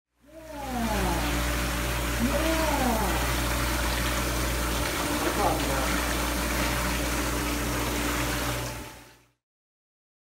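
Bathtub faucet running hard, pouring a stream into a partly filled tub, a steady rush of water over a low hum. It cuts off suddenly about a second before the end.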